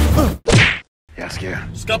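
Swing-style music cuts off abruptly, followed at once by a single short swishing whack. There is a moment of silence, then quieter voice-like sound resumes about halfway through.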